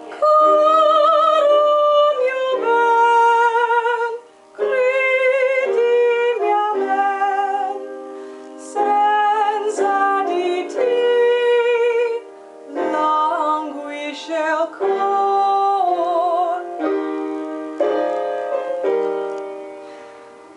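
A woman singing a song in Italian with marked vibrato, in phrases broken by short pauses for breath, over a piano accompaniment.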